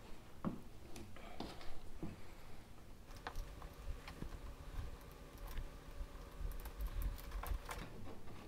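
Light clicks and rustles of a plastic pulley and coated wire cable being handled as the cable is threaded around the pulley, with a faint steady hum starting about three seconds in.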